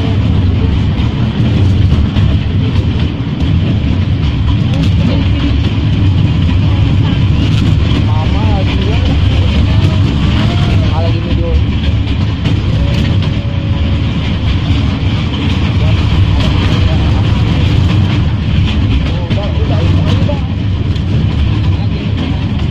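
Steady low rumble of an open-carriage tourist train running along, heard from inside the carriage. Faint voices come through around the middle.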